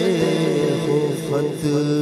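A man's voice chanting a melodic Islamic devotional recitation into a microphone, with long held notes that bend and glide in pitch.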